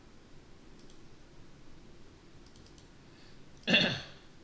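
Quiet room tone with a few faint clicks of a computer mouse, then a short loud burst near the end.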